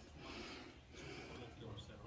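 Quiet background with a faint low hum and faint, indistinct voices; no impact wrench running.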